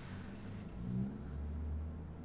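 Low, steady rumble from the TV episode's soundtrack, growing louder about a second in.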